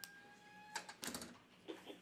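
Faint room noises: a thin steady tone that stops just before a second in, then a short clatter of clicks and a knock, the loudest sound here.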